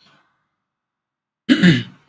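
A person clears their throat once, a short, loud burst about a second and a half in.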